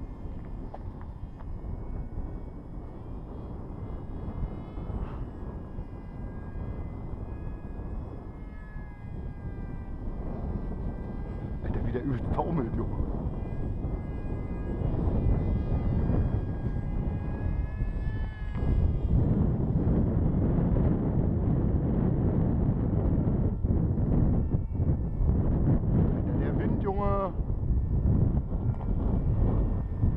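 Electric pusher motor and propeller of a Wing Wing Z-84 foam flying wing whining in flight: a set of thin, steady high tones that shift slightly in pitch as the throttle changes. Under it is wind rumbling on the microphone, which grows louder in the second half.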